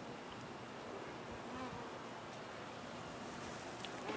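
Honey bees buzzing, faint and steady.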